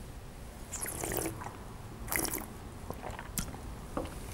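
A wine taster sipping red wine, with soft slurping and mouth sounds about a second and two seconds in as the wine is drawn in and worked around the mouth. A light click near the end as the glass is set down on the table.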